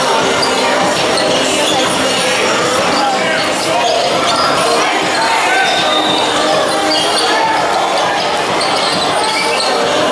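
Basketballs bouncing on a hard indoor court amid the voices of players and spectators, echoing in a large hall.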